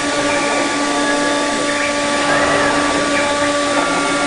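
Wood CNC router's spindle running steadily, a constant whine over a broad hiss.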